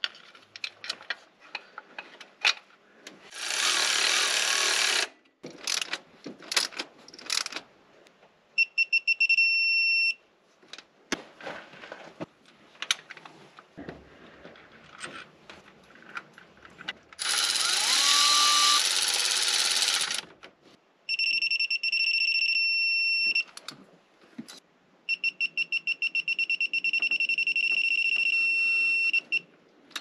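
A digital torque wrench adapter on a ratchet beeps in a steady high tone three times, the last about four seconds long, as bolts on a Range Rover engine's timing chain tensioner are tightened; the long beep is the signal that the set torque has been reached. Two bursts of a power tool running, each two to three seconds, come before the beeps, with metal clicks and clinks of tools between them.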